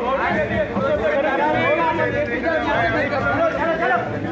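A crowd of men talking over one another, several voices at once.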